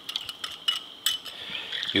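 Wire whisk clicking and scraping against a small glass bowl as a flour slurry is poured out into a soup pot, a quick run of light ticks.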